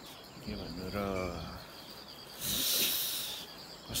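A brief word from a man's voice, then a hiss lasting about a second, the loudest sound here, over faint high chirping in the background.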